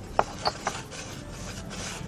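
Pan being slid and swirled on a glass-ceramic hob: a scraping rub, with a few light knocks in the first second.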